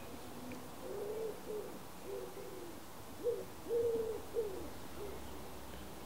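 Low cooing calls of a bird: soft single-pitched notes in a few short phrases, with a longer note in the middle of the last phrase.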